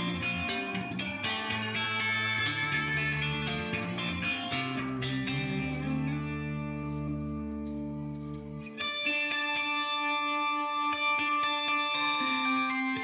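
Electric guitar jam: quick picked notes over sustained low tones. About nine seconds in, the low part stops and high, ringing sustained notes take over.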